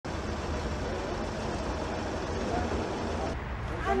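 Steady outdoor street noise of road traffic, with faint voices in the background. The hiss drops away a little before the end.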